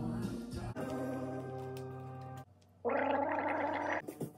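A man gargling mouthwash in two goes: a steady pitched gurgle, a short pause about two and a half seconds in, then a second, rougher gargle.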